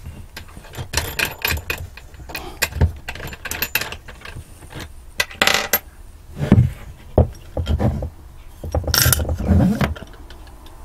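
Small metal lamp hardware and wooden parts handled on a hard worktop: a string of irregular clicks, knocks and metallic clinks, among them a steel nut and washer set down on the bench, with louder clusters of clinking about halfway through and near the end and a few dull knocks in between.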